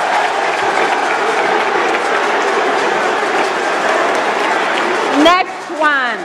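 Studio audience cheering and applauding loudly for a correct answer, with two short rising shouts near the end.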